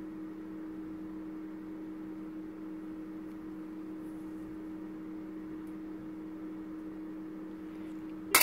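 A steady low background hum with two held tones, unchanging throughout, over a faint hiss.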